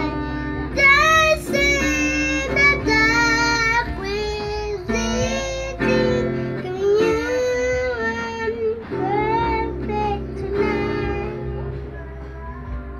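A young girl singing while strumming an acoustic guitar.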